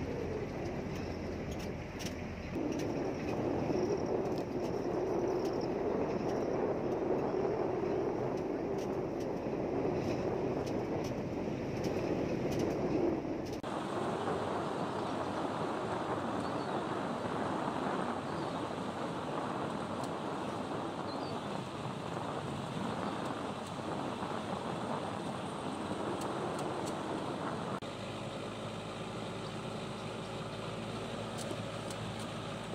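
Safari jeep driving along a dirt track: steady engine and tyre noise. The sound changes suddenly a couple of times, once near the middle and again near the end.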